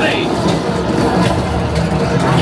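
A simulator ride's soundtrack playing through the cockpit speakers: a loud, steady low rumble of starship engine effects mixed with battle sound effects and voices.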